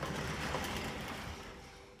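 A rush of noise like a wave or a whoosh, swelling about half a second in and then fading away.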